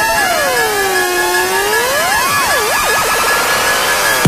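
Electronic dance music build-up: several synthesizer tones sweep up and down in pitch like sirens over a steady high tone, while one line slowly rises.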